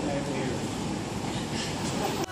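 Steady indoor background noise, heaviest low down, with faint voices under it.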